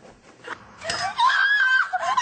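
A person screaming in a high, wavering voice, starting about a second in after a quiet opening.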